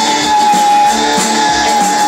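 Live country-rock band playing, with a strummed acoustic guitar under one long note held steady across the whole stretch.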